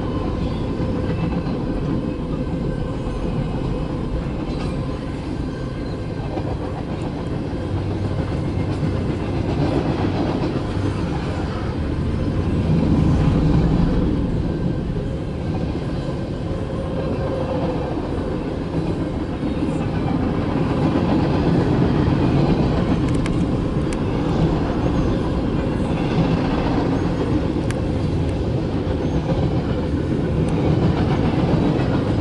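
Freight cars of a CSX mixed freight train rolling past at close range: a steady rumble of steel wheels on the rails that swells and eases a little, with a few sharp clicks in the later part. Heard from inside a stopped car.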